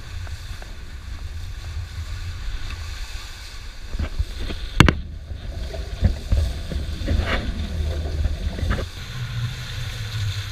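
Wind buffeting the microphone and water rushing and splashing against the bow of a sailing catamaran's hull as it cuts through choppy sea, with one sharp knock about five seconds in and heavier splashes after it.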